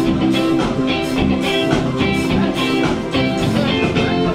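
Dance band playing upbeat music with a steady beat and held melody notes.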